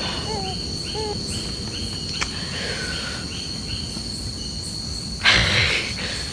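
Night insect ambience of crickets: a steady high drone with a run of short chirps repeating about twice a second through the first half. Near the end, a short, loud rush of noise lasting under a second.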